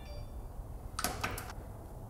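Handling noise from a garage door sensor and its wire being pressed onto the opener's metal rail: a quick cluster of about three short clicks and rustles about a second in, over a low steady hum.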